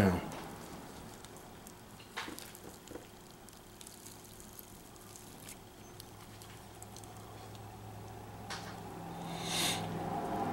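Faint handling sounds of a tobacco-leaf blunt wrap being rolled and tucked between the fingers: soft crinkles and a few light clicks. A low steady hum comes in about halfway, and a short hiss follows near the end.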